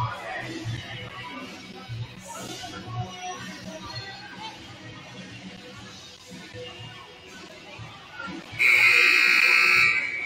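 Basketball scoreboard buzzer sounding once, a loud steady electronic tone of about a second and a half near the end, signalling play to resume for the next quarter. Before it, background music plays over the gym's sound system with crowd chatter.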